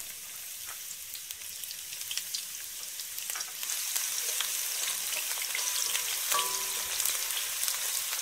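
Sliced onions sizzling and crackling in hot oil, just added to the pan to fry until light brown, with scattered light ticks. The sizzle grows a little louder about three and a half seconds in.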